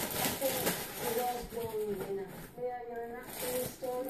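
A faint voice murmuring over light rustling of plastic packaging.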